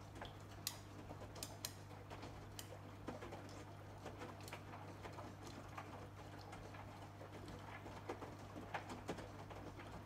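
AEG Lavamat Protex front-loading washing machine tumbling a load of jeans in its wash phase: a faint steady motor hum with irregular light clicks and taps from the load turning in the drum.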